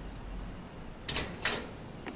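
Two sharp knocks about a third of a second apart, over a low steady hum.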